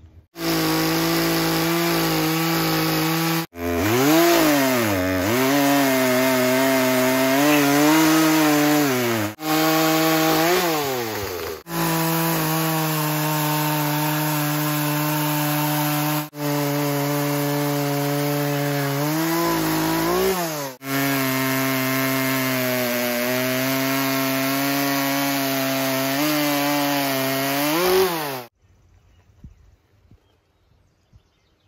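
Poulan Pro 18-inch two-stroke chainsaw cutting into a log at high revs, its pitch dipping and recovering as the chain bites into the wood. The sound is broken by several abrupt short gaps and cuts off suddenly near the end.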